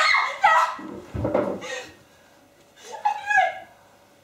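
Anguished vocal cries from a stage actor, with a heavy thud about a second in and another cry about three seconds in.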